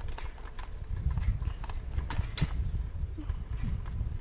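Bicycle rolling along a concrete sidewalk: a steady low rumble of wind and tyres with irregular sharp rattling clicks.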